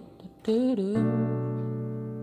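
Piano chord, B minor 7 (B, F#, A, D), struck about a second in and held, ringing on as it slowly fades. A brief spoken word comes just before it.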